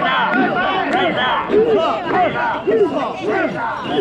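Mikoshi bearers chanting together in rhythm as they carry a portable shrine, many voices shouting in unison about twice a second.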